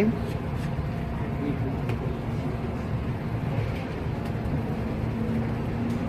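Steady low rushing hum of laboratory ventilation running, with a few faint clicks from handling the pipette and the bottle.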